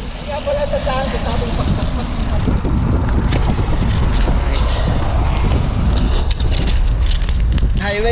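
Wind buffeting the microphone of a camera on a moving road bike: a steady, dense low rumble.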